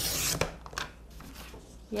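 Blade carriage of a sliding paper trimmer pushed along its rail, slicing through a sheet of scrapbook paper in one short rasping stroke that ends with a click about half a second in.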